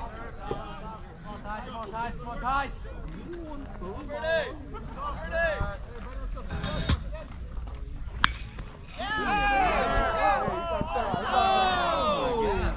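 Baseball players' voices shouting and chattering across the field, with one sharp crack about eight seconds in. A louder burst of many overlapping voices yelling follows.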